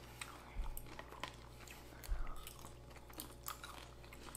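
Quiet chewing of crispy pork belly, with a few soft crunches and small clicks scattered through it.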